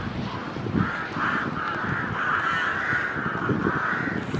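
Rooks cawing at their nesting colony in spring. Several birds give harsh caws that overlap into an almost unbroken chorus from about a second in.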